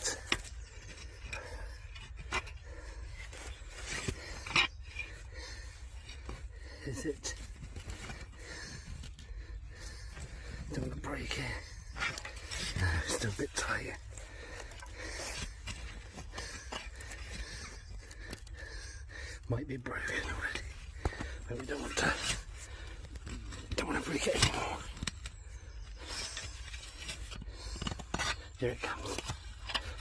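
Hand fork scraping and prising through soil and roots around a buried pot, with scattered sharp scrapes and clinks as the metal tines catch on the pottery and stones.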